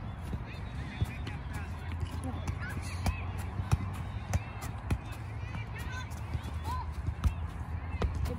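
Soccer ball on an elastic tether being kicked and juggled: short thuds at uneven spacing, about one a second, over a low steady background rumble.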